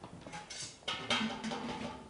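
Dry malt extract powder being poured from a plastic bag into a steel pot of hot wort: a rustling hiss from the bag and the falling powder, a short burst and then a longer one from about a second in.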